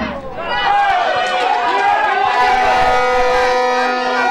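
Several voices on a football pitch shouting and calling at once, overlapping, starting about half a second in.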